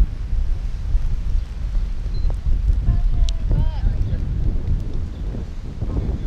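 Wind buffeting the camera microphone, a loud, uneven low rumble throughout, with faint distant voices briefly about three and a half seconds in.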